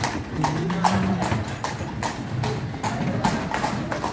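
A carriage horse's hooves clip-clopping on cobblestones as a horse-drawn carriage passes, a repeated sharp knock a few times a second.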